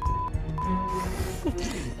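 Two censor bleeps, steady pure beep tones, the first short and the second about half a second long, masking speech over background music.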